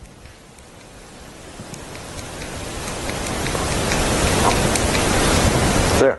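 A crackling hiss with scattered clicks that grows steadily louder over several seconds, then cuts off suddenly.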